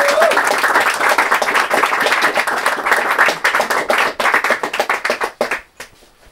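Small audience applauding, dense clapping that thins to a few last claps and stops near the end.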